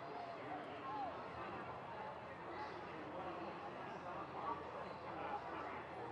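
Faint, indistinct voices of several people talking over a steady background murmur.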